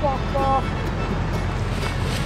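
Steady low rumble of wind and surf at the shore on the microphone, with two short pitched calls in the first half-second.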